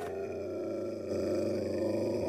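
A drawn-out, guttural growl from a cartoon character's voice, held at one steady pitch with a rough, rattling edge, and cutting off abruptly.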